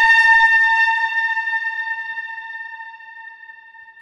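A metal swipe transition sound effect, time-stretched and pitched down a full octave, ringing as one steady metallic tone with overtones that slowly fades away.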